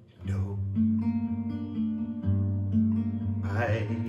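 Acoustic guitar comes in after a quiet pause with a strum about a quarter second in, then held chords ringing low and steady. Near the end a man's singing voice comes in over the guitar.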